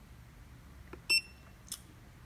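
Cascade Power Pro spin-bike console giving one short, high beep about a second in as its start/stop button is pressed, confirming the step to the next setting.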